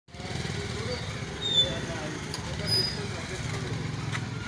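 A motorcycle engine running close by with a steady low pulse, under background voices. A short high-pitched squeak comes about one and a half seconds in.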